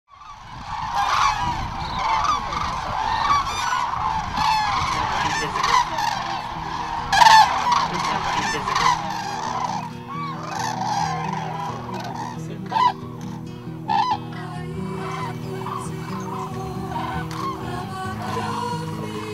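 A large flock of common cranes calling, many trumpeting calls overlapping. About ten seconds in, soft music with held tones comes in beneath them, and the calls go on more sparsely.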